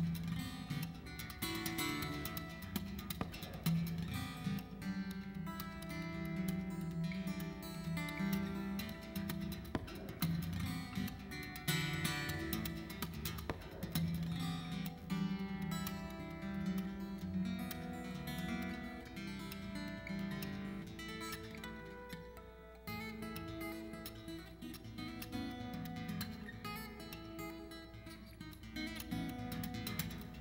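Solo acoustic steel-string guitar played fingerstyle: a picked melody over sustained bass notes, with a brief drop in level about two-thirds of the way through.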